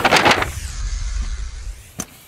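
Slowed-down sound of a mountain bike riding off a folding kicker ramp in slow motion: a brief rush of noise, then a deep low rumble.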